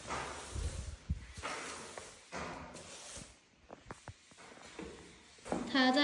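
Plastic-bristle broom sweeping a tiled floor: several short swishing strokes with a few light clicks. A voice starts near the end.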